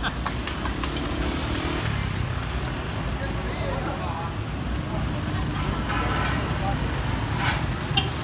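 Street traffic: motor scooters and cars passing in a steady rumble, with faint voices mixed in.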